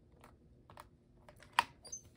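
Faint handling of a MISTI stamp positioning tool while a clear stamp is pressed onto cardstock, then one sharp click about one and a half seconds in as the tool's hinged clear plastic door is lifted open, followed by a couple of small clicks.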